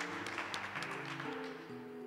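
A congregation applauding, the clapping dying away over about a second and a half, over instrumental music with long held chords that change near the end.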